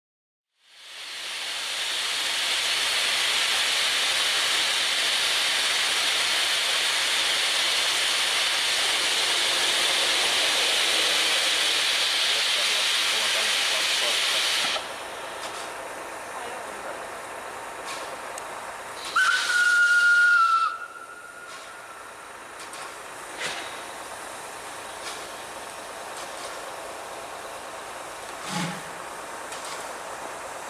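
Hr1 steam locomotive releasing a loud, steady hiss of steam that stops abruptly about halfway through. About 19 seconds in, its steam whistle gives one short blast of about two seconds, then only faint background remains.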